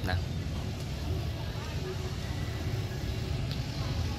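Outdoor street ambience: a steady rumble of road traffic with no single event standing out.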